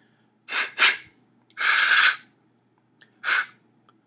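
Sharp breathy puffs of air blown through the bore of a freshly drilled carrot, four in all: two quick ones, a longer one of about half a second, then one more. They are blown to clear loose bits of carrot out of the bore.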